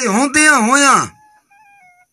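A man singing a drawn-out, wavering line of Punjabi folk verse, his voice rising and falling in pitch, which stops about a second in.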